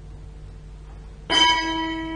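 Altar bell struck once a little over a second in, ringing on with several steady tones as it fades. It marks the elevation of the chalice after the words of consecration.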